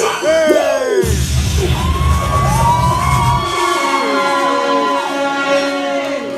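Loud music with a singing voice gliding up and down over it; a heavy bass beat runs for a couple of seconds and cuts out about three and a half seconds in, leaving long held notes.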